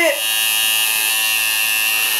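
Electric tattoo machine buzzing steadily as the needle works outline linework into the skin of the arm.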